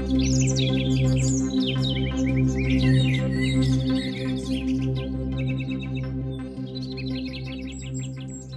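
Ambient synthesizer music played on a Korg Wavestate: a sustained low pad with soft tones above it, with birds chirping and twittering over it. The birdsong is busiest in the first half and thins out later, and the whole sound gradually gets quieter toward the end.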